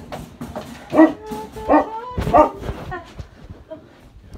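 A dog barking three times, about a second apart, over faint background music.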